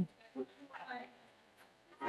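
Faint, brief murmur of background voices in the first second, then near silence.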